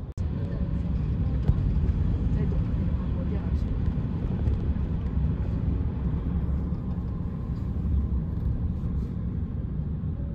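Steady low rumble of road and engine noise heard from inside a vehicle moving through city traffic.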